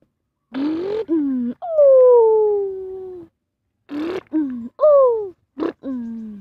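A person's voice making truck-engine noises by mouth: a string of about six short hums, each sliding down in pitch. One near the middle is drawn out for about a second and a half.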